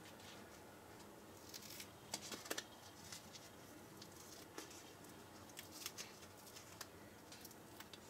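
Faint, scattered small clicks and rustles of tiny plastic craft decorations being handled and sorted in a quiet room.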